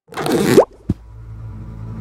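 Cartoon crash sound effect: a loud, noisy burst lasting about half a second with a rising tone through it, then a short pop about a second in. Low, steady music follows.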